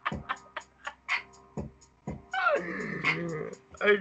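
Men laughing: a few short breathy bursts, then a long, strained, whining laugh that falls in pitch.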